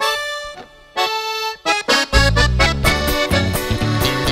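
Live norteño band music: an accordion plays two short solo phrases, then the full band with a strong bass comes in about two seconds in and plays on steadily.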